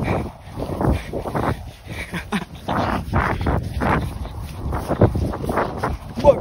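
A person panting hard and laughing breathlessly in irregular bursts, out of breath from running.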